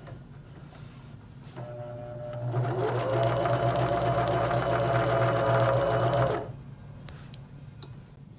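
Elna eXplore 320 electric sewing machine stitching a zigzag through fabric. The motor starts about a second and a half in and speeds up with a rising whine, then runs steadily with rapid needle strokes. It stops about six and a half seconds in.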